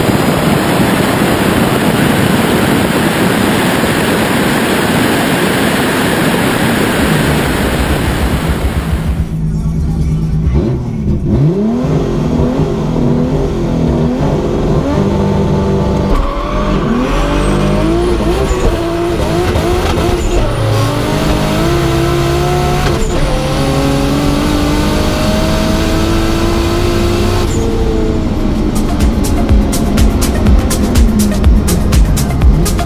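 Drag cars running: first a dense, even rush of wind and engine noise from a car at speed down the strip, cutting off about nine seconds in. Then a turbocharged BMW E46 race car's engine heard from inside its stripped cabin, revving up and down repeatedly.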